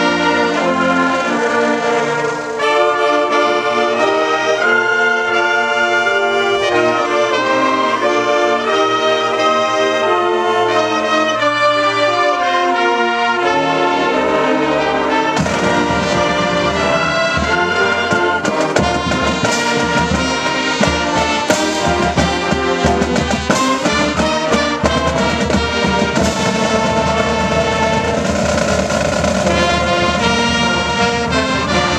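High school marching band playing a brass-heavy tune: flutes, saxophones, trumpets and sousaphones in full chords. The drums come in about halfway through and carry a steady beat to the end.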